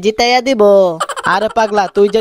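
A voice making a long, drawn-out non-word vocal sound that falls slightly in pitch, followed by quick, squawky voice sounds.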